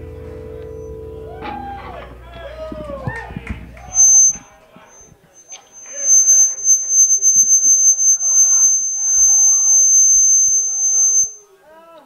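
A live rock band's closing chord rings out and stops about four seconds in, followed by voices calling out. A loud, steady high-pitched tone sounds briefly near four seconds and then holds from about six to eleven seconds over the voices, before the sound cuts off suddenly.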